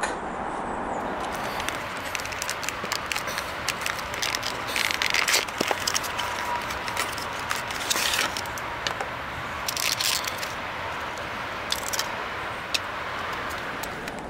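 A model railway wagon being unboxed: a clear plastic packaging tray slid out of its cardboard box and handled. Many small crackles and clicks, with a few louder scrapes of plastic against card.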